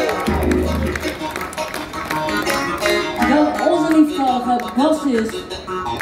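A live rock band playing: drum kit hits with electric guitar and bass, with bending, sliding notes in the middle.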